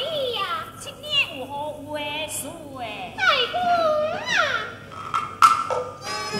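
High-pitched voices in the stylised, gliding stage speech of Teochew opera, with a single sharp knock near the end.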